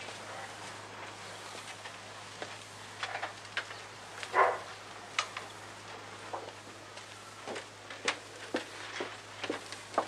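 Footsteps on cobblestones: irregular short knocks and scuffs, with one louder short noise about four and a half seconds in, over a steady low hum from the old soundtrack.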